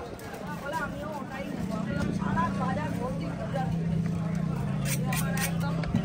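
Voices talking over a steady low motor hum, as of a vehicle running close by. A few sharp clicks come about five seconds in.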